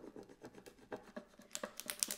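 A small vinyl scraper rubbing hard back and forth over adhesive vinyl on a glass plate, burnishing it down in quick scratchy strokes that come faster and sharper near the end.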